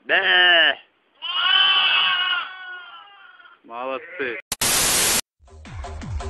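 Lambs bleating: three calls, the second one long and drawn out. A short harsh burst of noise follows, then electronic dance music with a steady beat starts near the end.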